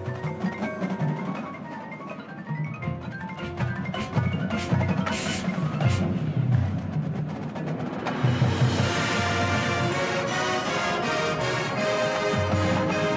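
Marching band music: the front ensemble's mallet percussion plays quick runs of notes over low drum hits, with a brief high shimmer near the middle. At about eight and a half seconds the full band comes in louder with held chords.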